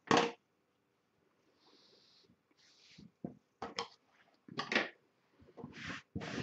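Hands handling and smoothing a woven wool strip on a tabletop: soft rustles and a few light knocks, with a short sharper noise right at the start.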